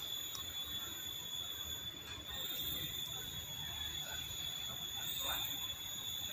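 Faint background noise with a steady high-pitched whine held at one pitch throughout.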